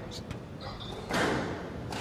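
Squash rally sounds: sharp knocks of the ball being struck, with a brief high squeak like a court shoe, then a short rush of noise a little after a second.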